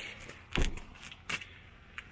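A few short knocks and clicks: the loudest about half a second in, a fainter pair about a second later.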